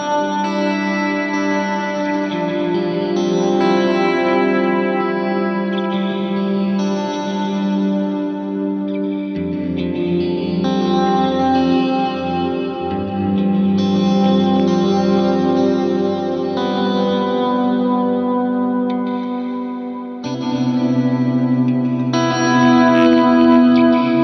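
Strat-style electric guitar playing slow, sustained chords through a JHS 3 Series Reverb pedal. The chords change every second or two and the notes wash into one another, with a lower bass note joining about ten seconds in and again near the end.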